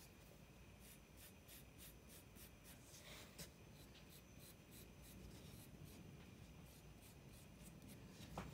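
Faint, quick scratching of a metal-tined scoring tool over clay, about four or five strokes a second, with one slightly louder scrape about three seconds in.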